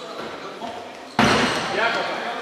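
A giant inflatable kin-ball struck hard by a player's hands a little after a second in, a sudden loud smack that rings around the sports hall, with players shouting before and after it.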